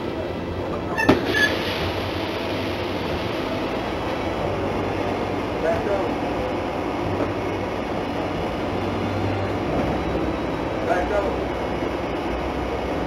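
Steady engine and road rumble inside a city transit bus as it slows to a stop, recorded by its onboard surveillance microphone, with one sharp click about a second in and faint passenger voices.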